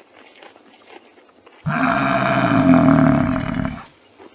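Water buffalo calling: one long call that starts suddenly about a second and a half in, lasts about two seconds and fades out just before the end.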